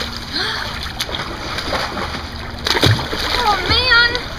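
Swimming-pool water splashing and churning around a girl in the water, with her voice in wordless sounds that rise and fall near the end.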